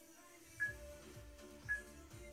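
Interval timer beeping twice, short high beeps about a second apart, counting down the last seconds of a rest period. Background music plays underneath.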